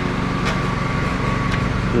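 Electric box fan running with a steady motor hum, and a light click about half a second in as a bar clamp is handled.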